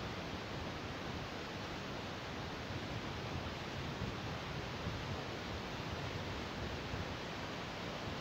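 Steady background hiss in a small room, even and unchanging, with no distinct sounds standing out.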